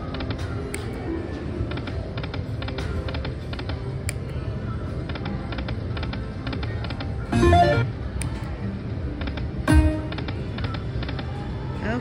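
Panda Magic video slot machine's game sounds as the reels spin: a steady bed of electronic music with rapid light clicks throughout, and two louder bursts about seven and a half and ten seconds in.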